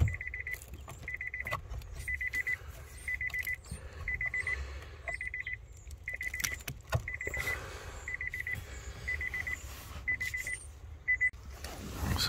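Nissan Leaf's door warning chime beeping about once a second, each beep a short, fast-pulsing high tone. A few faint clicks and rustles from hands handling the wiring loom behind the glovebox.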